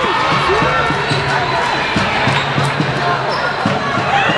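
A basketball being dribbled on the hardwood court, a few sharp bounces echoing in the hall, under the steady chatter of many voices from the crowd.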